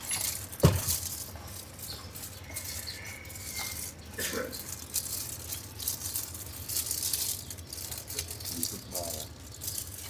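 Plastic sheeting and banana leaves crinkling and rustling as sticky rice and dried shrimp are scooped by gloved hands and wrapped in the leaf, with scattered small clicks and one sharp knock about a second in.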